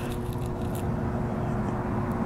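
Wind rumbling and buffeting on an outdoor microphone, with a faint steady hum underneath.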